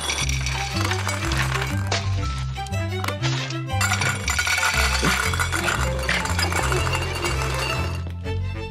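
Background music with a stepping bass line, over dry dog kibble clinking as it pours from a dispenser into a metal bowl.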